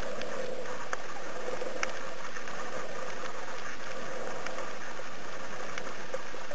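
Muffled underwater noise recorded from a camera submerged on a coral reef: a steady rushing hum with a few sharp, scattered clicks.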